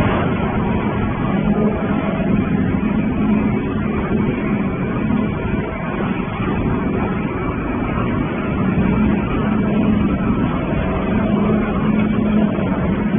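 Industrial waste shredding line running: a steady mechanical din from the shredder and the conveyor carrying shredded material, with a low hum that swells a little at times.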